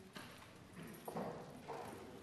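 Faint room sound of a large debating chamber during a pause: low, distant murmured voices with a few light knocks.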